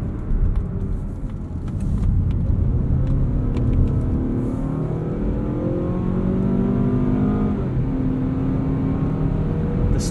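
The 2020 Mazda CX-30's 2.5-litre four-cylinder engine under hard acceleration, heard from inside the cabin. Its pitch climbs for several seconds, drops at an upshift about three-quarters of the way through, then climbs again.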